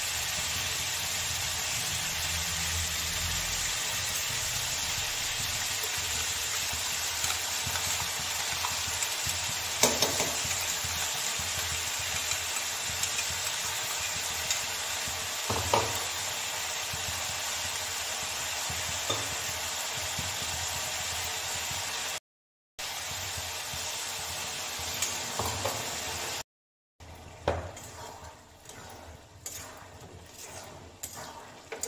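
Ground masala paste frying in hot oil in an aluminium kadai: a steady sizzling hiss with a few sharp knocks of a metal spatula against the pan. It cuts out twice, and near the end the sizzle gives way to quieter scraping and clicking as the mixture is stirred.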